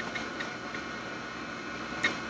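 A few faint, irregular clicks of typing on a computer keyboard over a steady low hiss.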